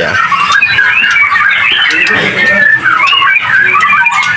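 Many caged songbirds chirping and calling over one another without a break, in quick rising and falling notes.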